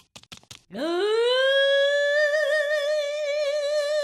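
A boy's voice singing one long high note, sliding up into it about a second in and then holding it with vibrato.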